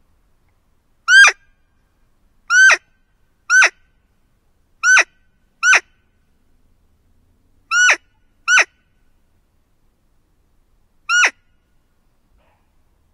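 Roe deer lure call squeaked eight times in short, loud, high peeps that each drop sharply in pitch, spaced unevenly about a second apart, imitating a roe doe to draw in a buck.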